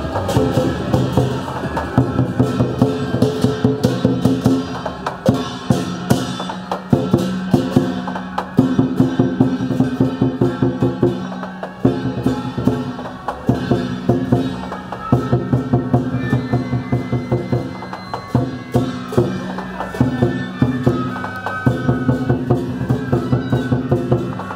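Traditional Chinese opera-style music: a held melody in short phrases over fast wood-block and drum beats.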